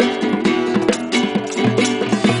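Acoustic guitar strummed in a quick, steady rhythm, with a small hand drum tapped along.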